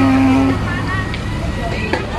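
People's voices: one drawn-out pitched voice sound that stops about half a second in, then fainter talk, over a steady low rumble.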